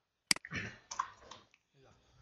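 A single sharp computer mouse click about a third of a second in, followed by fainter low-level sound.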